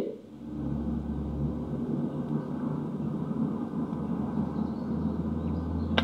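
A steady low rumble with a faint hiss above it, without speech.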